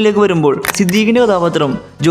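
A person's voice talking over faint music, with a sharp click about two-thirds of a second in.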